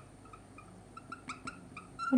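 Faint marker squeaking on a glass writing board: a quick string of short, high chirps and ticks as the pen is stroked across the surface.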